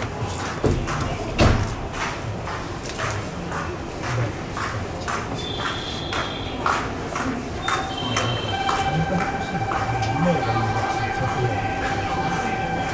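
Station sounds while the train waits to depart: a run of regular sharp clicks, then short electronic tones at several pitches and, from about two-thirds of the way in, a steady pulsing electronic tone, typical of a platform departure signal. Faint voice underneath.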